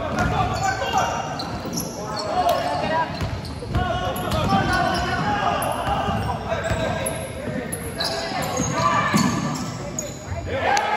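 A basketball being dribbled on a hardwood gym floor, with sneakers squeaking as players run and cut, under the voices of players and spectators calling out.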